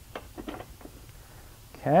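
A few faint clicks and rustles in the first half-second of rope being pulled through a Ropeman rope clamp, taking up slack in a standing-frame harness line.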